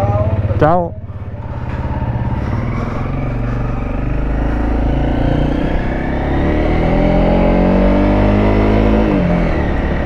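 Honda CRF300L single-cylinder dual-sport engine pulling away and accelerating, its pitch climbing steadily over several seconds, then dropping as the throttle is closed near the end.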